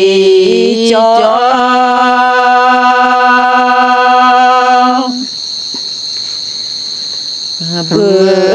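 A single voice singing a Karen sung poem (tha) in long held notes with small slides in pitch, breaking off about five seconds in and coming back just before the end. A steady high-pitched tone runs underneath throughout and is left on its own in the pause.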